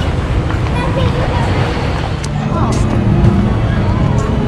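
Outdoor chatter of people's voices over a steady low rumble, with a few faint steady tones joining about halfway through.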